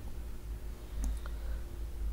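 Low steady hum with a couple of faint clicks about a second in.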